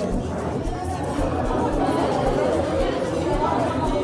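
Chatter of many diners in a busy restaurant, with background music with a steady beat under it.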